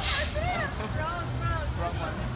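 Low rumble of a fire engine's diesel engine as it pulls away, under the voices and laughter of people on a busy street. A short hiss comes right at the start.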